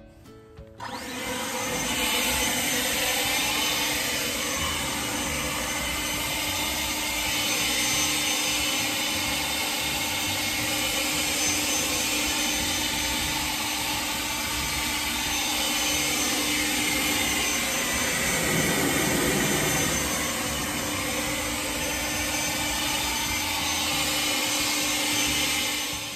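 Handheld blower starting up about a second in and running steadily, blowing rinse water off a pickup truck's body: a continuous rush of air over a steady hum.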